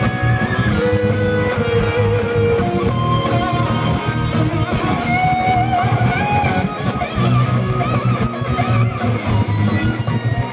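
Live instrumental rock: a lead electric guitar plays a melody of held notes with a wide, wavering vibrato, over drums, bass and a second electric guitar.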